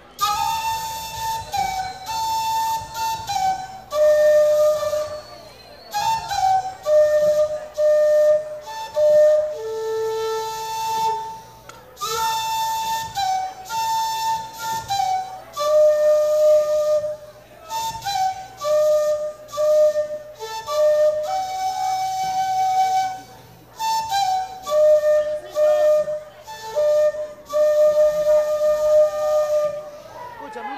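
Andean folk dance music led by a flute, playing a repeating melody of held notes in short phrases with brief breaks between them.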